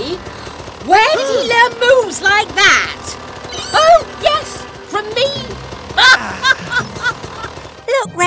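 Wordless cartoon voices: short, bending vocal sounds in several bursts, over a low engine rumble.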